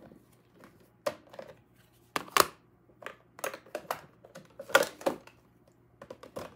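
Handling of craft supplies on a tabletop: irregular clicks, taps and knocks as paper cards and plastic ink-pad packaging are picked up, shuffled and set down. The loudest knocks come around two and a half seconds and near five seconds in.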